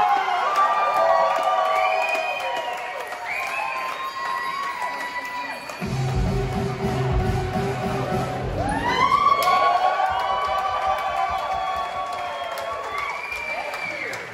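Music playing over an audience cheering and applauding. A heavy bass beat comes in about six seconds in and drops out about three seconds later.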